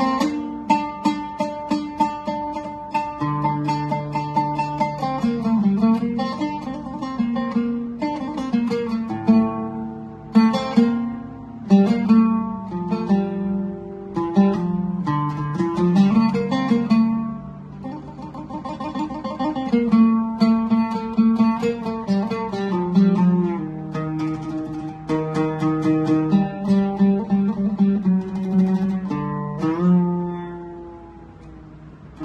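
Solo oud playing an unaccompanied taqasim improvisation: single plucked melodic phrases broken by quick flurries of notes, with low notes left ringing beneath and no steady beat.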